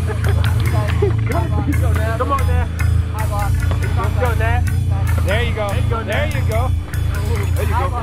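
Men shouting and yelling over one another, with a steady low hum underneath and scattered sharp clicks.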